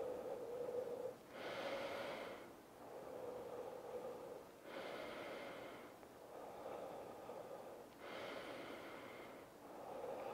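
A man's slow, deep recovery breathing after exercise, heard quietly close to the mic. There are about four even cycles, each an inhale through the nose followed by a longer, airier exhale through the mouth, every two and a half seconds or so.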